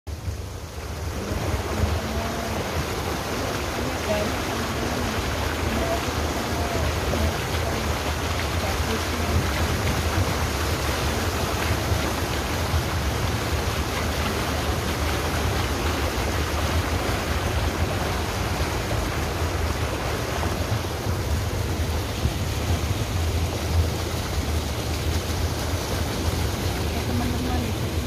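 A car ploughing through floodwater on a submerged road: a steady rush and wash of water pushed aside by the car, over a low engine and road rumble.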